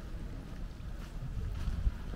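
Wind buffeting the microphone: a steady low rumble, with a brief louder bump near the end.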